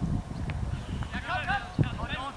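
Football players shouting to each other on the pitch, the calls rising about halfway through, over a low rumble on the microphone, with a short sharp thud near the end.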